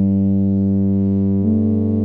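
Notation-software playback of a solo tuba score in two voices: a low note held as a drone under a held upper note, which steps up once about one and a half seconds in.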